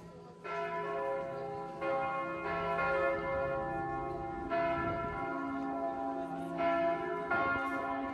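Church bells of Matthias Church ringing, fresh strikes coming every second or two, their tones overlapping and ringing on.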